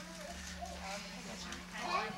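Indistinct chatter of several young children's and adults' voices in a room, with a steady low hum underneath.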